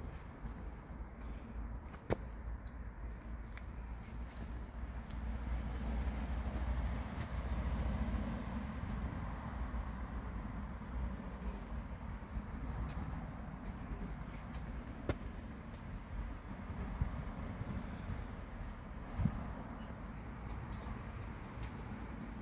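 Outdoor ambience: a steady low rumble that swells a little partway through, with a few faint scattered clicks.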